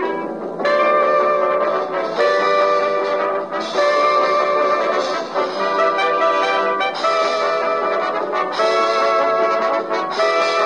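1940s swing band's horn section playing a run of held chords, a new one about every one and a half seconds, on an old film soundtrack with a thin sound and no deep bass.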